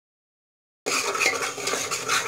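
A spatula stirring and scraping tomato masala being fried in a metal pressure cooker, a busy run of scrapes and clinks against the pot. It starts abruptly a little under a second in, after dead silence.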